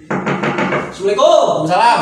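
A sudden loud cry from a person, with no words. It starts abruptly in rapid choppy pulses, then turns into a wavering wail that rises and falls in pitch over the second half.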